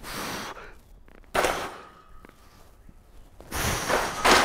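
Three hard, breathy exhalations, each about half a second long, from a man straining through bench press reps with a heavy loaded barbell.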